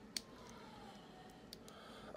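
Faint clicks of plastic parts as a small Transformers action figure is handled: one sharp click just after the start and a couple of lighter ticks about a second and a half in, over near silence.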